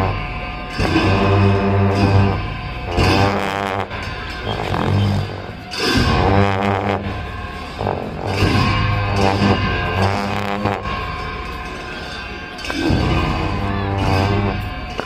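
Tibetan monastic ritual music for a cham dance: long horns hold a very low drone in repeated long blasts, while a reedy melody with bending, wavering notes plays above, in the manner of gyaling shawms.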